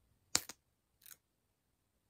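Mascara tube being pulled open, wand coming out of the tube: a sharp click about a third of a second in, a smaller click right after, then a short, softer sound about a second in.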